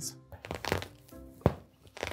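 A set of keys jabbed and scraped into a quilted mattress protector, with one sharp knock about one and a half seconds in. A few short musical tones play over it.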